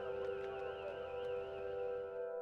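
Ambient background music of held, droning tones, with a higher tone wavering slowly up and down over them.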